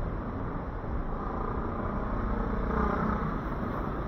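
City street traffic: vehicle engines running steadily along the road, with one passing vehicle growing a little louder about three seconds in.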